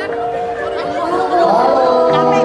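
Instrumental intro of a live song playing through a PA speaker, sustained chords held steady, with close, loud crowd chatter over it.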